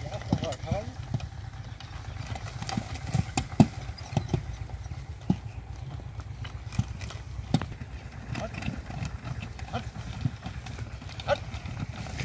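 Horse's hooves clip-clopping unevenly on a dirt road as it pulls a heavily loaded two-wheeled cart, with sharp knocks scattered through it over a steady low rumble.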